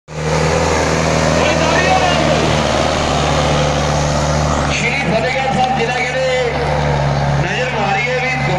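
Preet 6049 tractor's diesel engine running steadily under heavy load as it drags a disc harrow through loose soil, with crowd voices over it.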